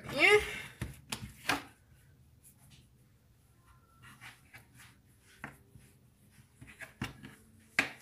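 A few scattered light clicks and taps, several close together in the first second and a half and then single ones further apart, with quiet between them.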